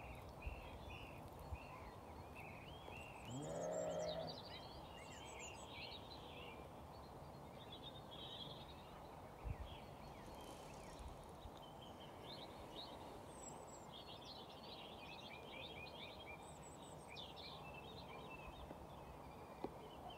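Small birds chirping and singing throughout, with one sheep bleat about four seconds in, the loudest sound. A faint thump near the middle.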